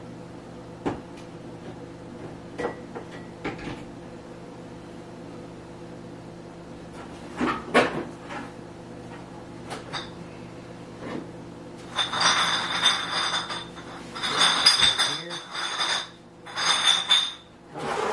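Kitchen handling noise over a steady low hum: scattered clicks and knocks, then, from about twelve seconds in, several louder bursts of rustling clatter.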